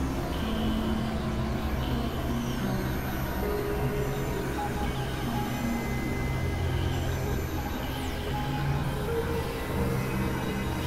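Experimental electronic synthesizer drone music: a steady low drone under held notes that step from pitch to pitch, over a dense, noisy texture.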